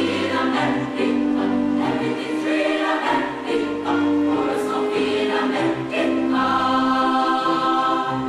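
Mixed high school choir of boys and girls singing in harmony, holding long notes near the end.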